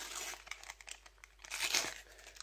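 Foil sticker-packet wrapper crinkling in the hands, then torn open with a louder rip near the end.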